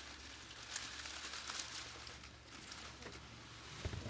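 Faint rustling of a bundle of bear grass blades being handled and laid across a vase in a flower arrangement, over a low steady hum.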